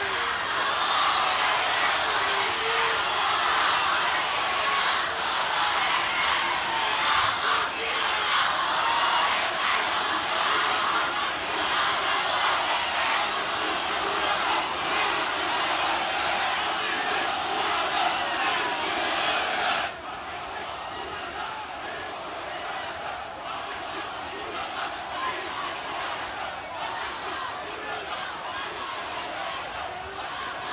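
A large rally crowd shouting and cheering en masse. The noise drops abruptly about two-thirds of the way through to a lower, steady crowd roar.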